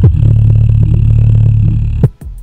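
Homemade portable Bluetooth speaker playing music loudly, its bass-reflex woofer putting out a deep, steady bass note.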